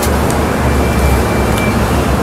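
Steady low background rumble under an even hiss, with a faint thin high tone for about a second in the middle.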